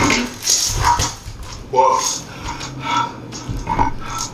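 A man's short grunts and gasps, several brief vocal bursts about a second apart, as he hauls himself out of the drum of a front-load washing machine.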